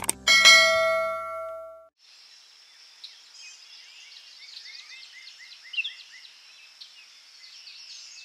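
A click followed by a bright bell-like notification ding, the sound effect of a subscribe-button animation, ringing out and fading over about a second and a half. After that, faint birds chirping over a soft, steady hiss.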